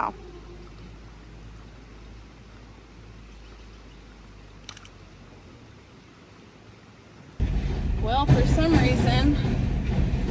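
Faint, steady outdoor background at a creek with one brief tap about halfway through. After about seven seconds it cuts to a truck cab, with a low engine rumble and a woman's voice over it.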